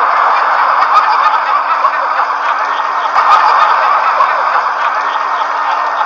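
Laugh track: a recorded crowd of many people laughing together at an even level, greeting the joke's punchline.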